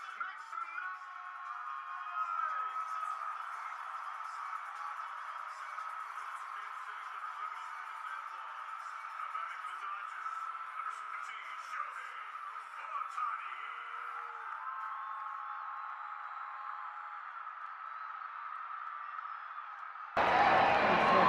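Ballpark ambience of crowd murmur and voices with music over the stadium PA. It sounds thin and muffled, with no low or high end.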